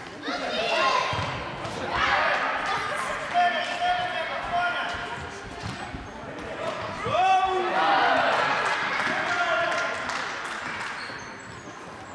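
Football kicked and bouncing on a sports-hall floor with sharp, echoing knocks, while children and spectators shout and call out.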